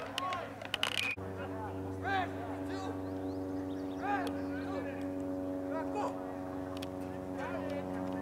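A steady machine hum with a stack of even overtones that starts abruptly about a second in and holds level, with distant shouts from players on the field over it.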